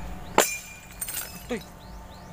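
A sudden sharp crash about half a second in, followed by a few fainter clinks.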